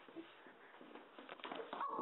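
Faint scuffling and a few knocks, then a high-pitched, wavering cry from a person starts near the end and grows louder.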